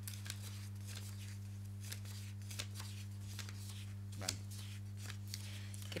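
Sheets of paper being leafed through and handled, a string of short crisp rustles over a steady low electrical hum.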